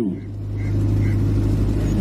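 A steady low rumble with a constant hum, as loud as the speech around it, swelling a little after the first half-second.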